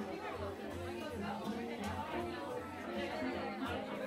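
Background music playing over the room's speakers, with held notes and a steady bass pulse, under a crowd of people chatting.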